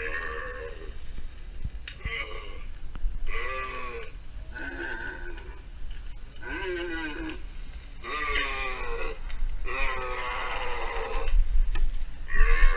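Animatronic smoldering zombie prop playing recorded zombie groans through its speaker: a string of about seven wavering, drawn-out vocal groans with short pauses between them.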